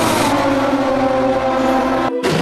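A loud rushing pass-by sound whose pitch falls in the first half-second, layered over sustained music notes.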